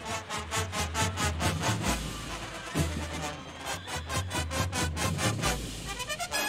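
Drum and bugle corps playing: a brass bugle line sounding fast, evenly pulsed notes, about four or five a second, over strong held low bass notes that change pitch about two seconds in and again near the end.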